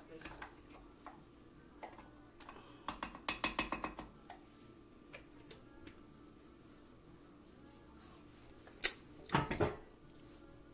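Kitchen counter handling sounds: a quick run of light clicks a few seconds in, then a sharp knock and a short clatter near the end.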